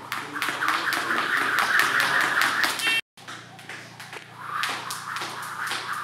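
Skipping rope on a rubber gym floor: quick, even taps of the rope and shoes, about four or five a second, over a steady hiss. The sound breaks off for an instant about three seconds in, then the tapping resumes.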